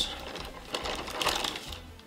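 Plastic shopping bag rustling and crinkling as a hand rummages inside it, with many small light ticks.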